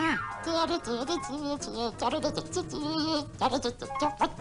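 Cartoon character's gibberish grumbling voice, expressive and sing-song, over light music. It opens with a quick falling swoop.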